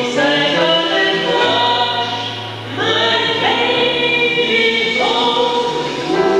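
Female vocal ensemble singing long held notes in close harmony, with double bass notes underneath that change pitch twice.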